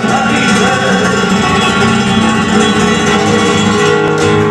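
Flamenco guitar playing continuously, the accompaniment of a minera-cartagenera, the cantes de las minas.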